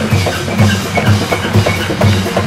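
Live jazz ensemble playing with a drum kit and bass, the drums hitting in a busy, steady groove over repeated low bass notes.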